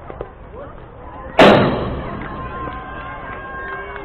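A pitched baseball striking the backstop fence close to the microphone: one loud, sharp bang about a second and a half in, then a ringing that lingers for about two seconds. The catcher leaves the plate afterward, which fits a wild pitch or passed ball.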